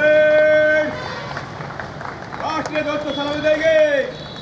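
A man's voice shouting two long, drawn-out parade drill commands to a police squad in formation. The first call is held for about a second; the second starts about two and a half seconds in and is held, rising slightly, to the end.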